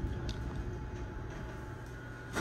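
Low, steady rumble and hum inside a high-speed traction elevator car (an Otis Elevonic 401 modernized by KONE) as it comes to rest at the landing, slowly fading.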